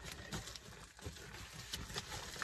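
Faint handling noises, a few small clicks and rustles of objects being moved, over a low background rumble.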